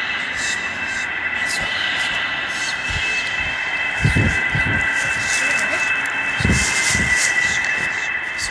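Eerie film sound design: a steady high-pitched drone over hiss and crackle, with low thuds about halfway through and again near the end.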